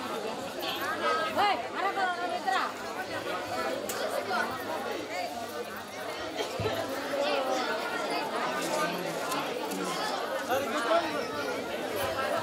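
Many voices chattering at once, overlapping, with no single speaker standing out.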